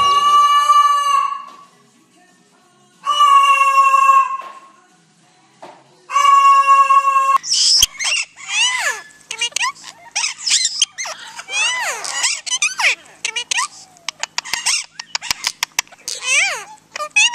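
A cockatoo giving three long, steady-pitched calls about three seconds apart. Then parakeets chatter in quick high squawks and chirps, many sweeping downward.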